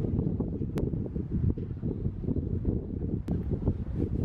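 Wind buffeting the microphone: a gusty low rumble that rises and falls, with two brief clicks, one just under a second in and another about three seconds in.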